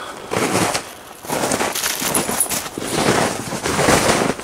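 Footsteps crunching through snow, an irregular crackling crunch that dips briefly about a second in, then carries on.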